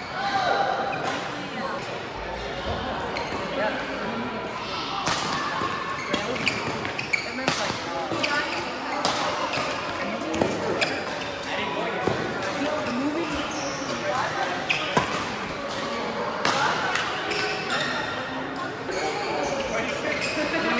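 Badminton play in a large hall: irregular sharp racket strikes on shuttlecocks, some from neighbouring courts, over steady background chatter of players' voices.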